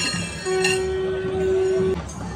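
A wind instrument holding one loud, steady note for over a second, starting about half a second in, over a low rumble of drums and crowd in temple procession music.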